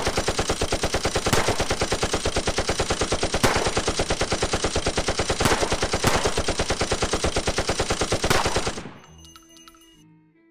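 Machine-gun fire sound effect: a long, rapid, even run of shots with a few louder cracks among them, stopping about nine seconds in.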